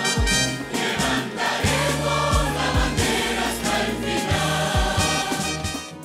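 Worship song sung by many voices together, with a band and drums keeping a beat.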